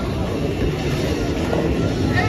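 Bowling ball rolling down the lane: a steady rumble.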